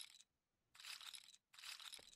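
Faint casino-chip clatter sound effects from an online roulette game as bets are placed: three short clatters, about three-quarters of a second apart.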